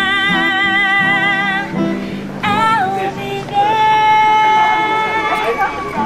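A woman singing long, wavering held notes while strumming an acoustic guitar, with a short break about two seconds in.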